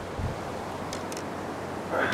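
Steady wind noise on the microphone over an open river, with a brief low bump just after the start.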